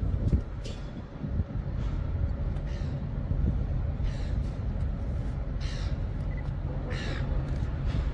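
A crow cawing about six times, spaced a second or so apart, over a steady low rumble from a railcar approaching slowly.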